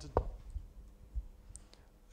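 A few sparse clicks from a laptop keyboard as a command is typed, with a couple of low thumps among them.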